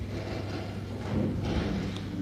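Congregation sitting down: rustling clothes, shuffling and a few dull thuds of chairs and pews.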